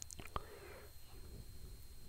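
Faint breathing and mouth clicks from the narrator between spoken phrases, with a couple of sharp little clicks in the first half-second.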